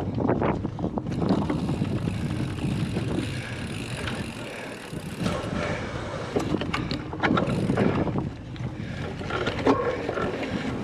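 Cyclocross bike ridden fast over a bumpy grass course, heard from the bike: knobby tyres rumbling over turf and wind buffeting the microphone, with the bike rattling and knocking sharply over bumps several times.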